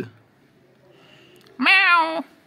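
A domestic cat gives one short meow, about half a second long, near the end.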